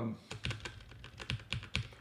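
Typing on a computer keyboard: a quick, irregular run of key clicks, roughly six a second.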